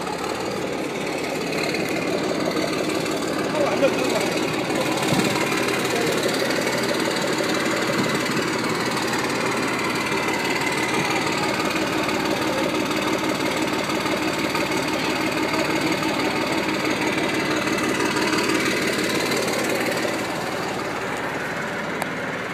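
Military vehicle engines running as they drive slowly past at close range: first a tracked armoured vehicle, then a sand-coloured armed patrol vehicle. The engine noise is steady and dense and eases off near the end.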